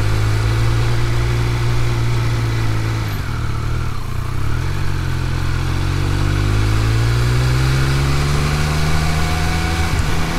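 Triumph Speed Triple 1200 RS's 1160 cc inline-three engine, heard from the rider's seat while riding at low speed. The engine note dips as the throttle is rolled off about three seconds in, then rises steadily as the bike accelerates and levels off near the end.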